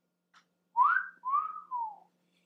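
A man whistling a short two-part phrase: a quick upward glide, then a longer note that arches and slides down.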